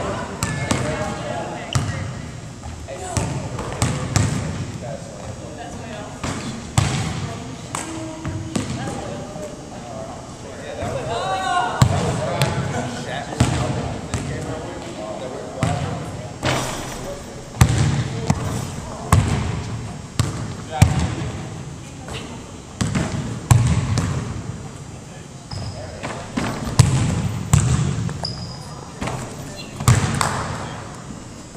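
Basketballs bouncing on a hardwood gym floor, irregular thuds every second or so from several balls, with a group of people talking in the background.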